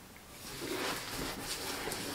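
Soft rustling and handling noise as a cardboard box is picked up and shifted on a lap with a small dog on it.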